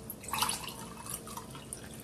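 Water poured from a plastic gallon jug into a stemmed drinking glass, splashing into the glass with an irregular trickle. It starts about a quarter second in, is loudest around half a second, then thins to a lighter trickle.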